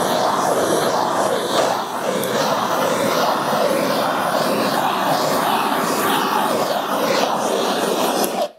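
Handheld gas blowtorch burning with a steady, loud rushing hiss of flame as it is passed over a freshly poured coat of countertop epoxy to torch it out.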